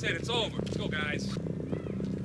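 Film soundtrack: a steady low music bed with high, wavering voice-like cries laid over it, twice.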